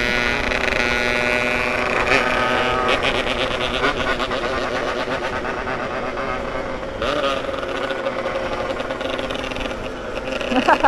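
Yamaha RX-King two-stroke single-cylinder motorcycle engine running on the move, its pitch changing about two seconds in and again about seven seconds in, with wind noise underneath.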